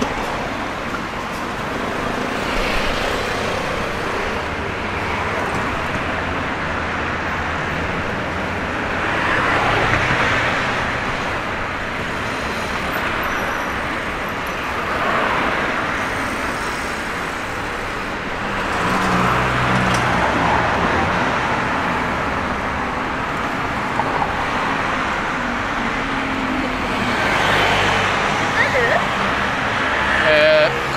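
City road traffic: a steady hum of cars along the street, with several vehicles passing close by, each swelling and fading, about four times.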